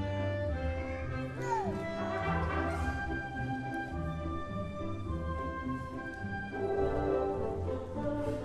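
Live symphony orchestra playing, with brass prominent: held notes over a pulsing low bass line.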